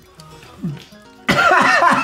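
A brief quiet pause, then about a second and a half in a man bursts out laughing loudly, with a cough-like catch in it.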